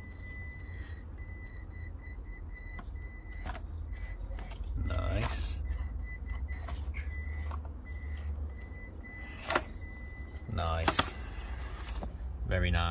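Traxxas TRX4M 1/18 mini crawler's small electric motor and geartrain whining in stop-start bursts of throttle as it crawls over rocks, with scattered clicks and a sharp knock about nine and a half seconds in as the brass wheels and tyres strike stone.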